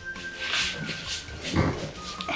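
Soft background music with one long held high note that stops shortly before the end, under fabric rustling as a person gets up from a sofa. A short loud burst comes about one and a half seconds in.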